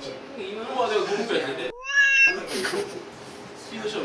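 A short cat meow sound effect about two seconds in, dropped in over a moment of dead silence, with men chatting and laughing before and after it. It is the same meow clip played again, an edited-in gag effect rather than a live cat.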